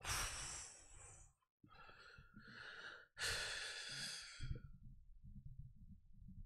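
A man sighing heavily into a close microphone. There are two long, breathy exhalations, one at the start and another about three seconds in, followed by faint low rustling.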